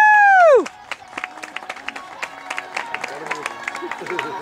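A single loud drawn-out call with overtones, rising, holding and falling in pitch over about half a second at the very start. After it, quieter background music with scattered light clicks.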